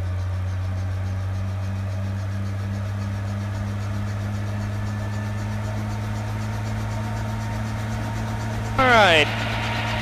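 1957 Bell 47 G-2 helicopter's Lycoming VO-435 six-cylinder piston engine and rotor running steadily on the ground at warm-up RPM, heard from inside the open cockpit. A brief voice-like sound falling in pitch comes near the end.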